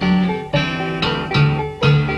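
Instrumental break of a 1970 pop song led by strummed acoustic guitar, its chords struck about twice a second.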